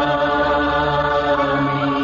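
Chanting voices holding one long, steady note, setting in abruptly at the start, over a low hum.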